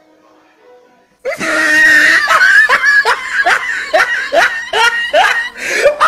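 A person laughing hard, in a rapid run of loud 'ha' bursts, about two or three a second. The laughter starts suddenly about a second in, after faint background sound.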